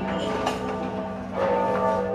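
A large bell tolling midnight, one stroke near the start and another about a second and a half in, each ringing on with a long hum, over soft music.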